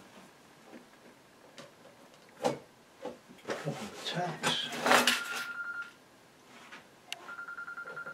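A telephone ringing with a fast electronic trill, starting about seven seconds in after one short ring tone near the middle. Before it come a knock and a burst of handling noise, the loudest sound here.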